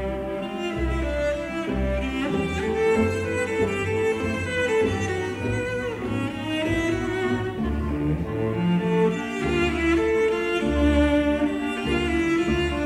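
Solo cello playing a singing melody over orchestral accompaniment: clarinets repeat short chords and the lower strings pluck pizzicato notes on the beat, giving a steady low pulse.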